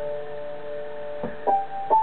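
Technics PX5 digital piano in electric-piano mode with built-in chorus, playing a slow B-minor melody. A held chord fades, then a little past halfway three notes are struck in quick succession, each higher than the last.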